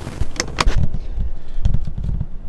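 Camera handling noise as a hand covers and grabs the camera: two sharp clicks about half a second in, then low muffled thumps and rubbing on the microphone.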